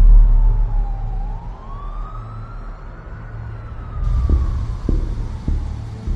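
An emergency-vehicle siren wailing slowly, falling, rising and falling again in one long sweep, over a deep low rumble that is loudest at the start. Near the end, three low thuds come about half a second apart.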